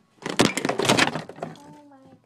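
Handling noise from the camera being grabbed and moved: a burst of rapid clattering and knocking lasting about a second.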